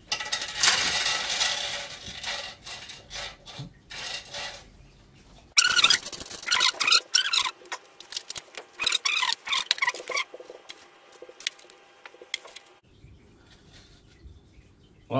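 Pieces of crushed lava rock dropped from a hand onto the bare glass floor of an empty aquarium and pushed into place, rattling and clicking against the glass. A run of high squeaks comes in the middle.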